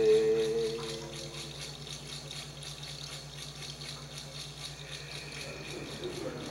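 A sung note, held, tails off in the first second or so, leaving a hand rattle shaken in a steady, fast, even rhythm.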